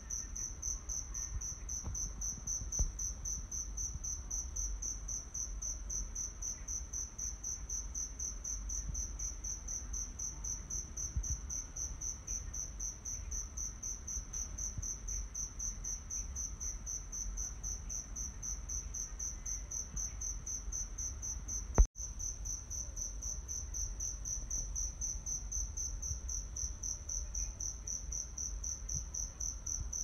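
Insects trilling in a steady, high-pitched chorus of rapid even pulses, over a low rumble. A single sharp click sounds about 22 seconds in.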